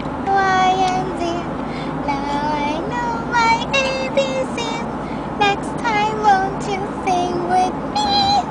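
A toddler singing wordless, high-pitched notes and squeals in a string of short phrases, over steady car road noise in the cabin.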